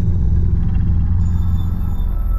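Deep, steady low rumble from a cinematic logo-reveal sound effect, the tail of a whoosh-and-boom hit. Faint high tones come in about a second in.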